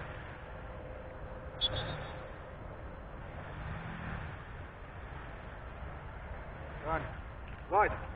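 Steady low background noise with a single short click about a second and a half in; a man's voice comes in briefly near the end.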